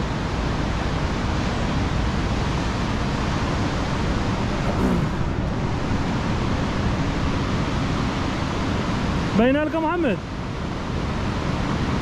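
Steady noise of surf breaking on the shore below, mixed with wind on the microphone. A short rising shout from a man's voice comes about nine and a half seconds in.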